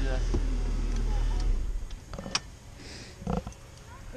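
Car engine idling with a steady low rumble, then switched off about a second and a half in, leaving it much quieter. A sharp click follows a little later.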